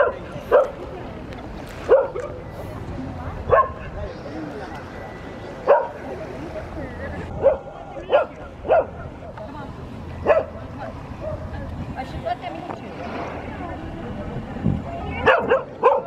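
Sea lions barking: short, loud single barks every second or two, with a quick run of barks near the end, over a steady low background rumble.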